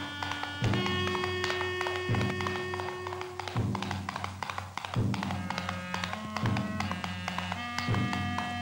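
Orchestral film score: held chords that shift every second or so, cut by a heavy drum strike about every one and a half seconds.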